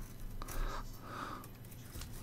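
Quiet workbench handling noise: a few faint clicks of hand and tool against a circuit board while capacitors are being desoldered.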